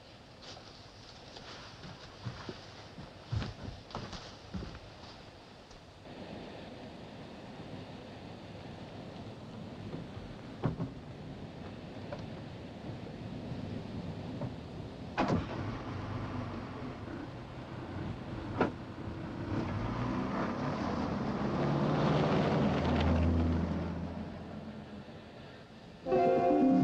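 A car at night: sharp knocks like car doors shutting, then the engine running, growing steadily louder to a peak and fading near the end as the car pulls away.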